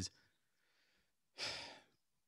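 Near silence, then a man's short audible breath about one and a half seconds in, lasting about half a second.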